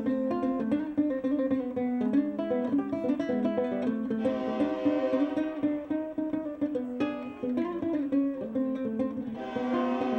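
Ukulele played solo in a flamenco-influenced style, with quick runs of picked notes. There are full, bright strums about four seconds in and again near the end, and a single sharp strike about seven seconds in.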